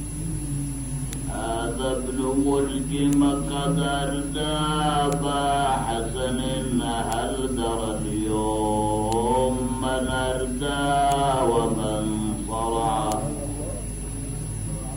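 A man chanting a mourning recitation, holding long melodic notes that bend up and down, with a steady low hum beneath.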